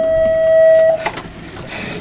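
A loud, steady tone held at one pitch that cuts off suddenly about a second in, followed by quieter background noise.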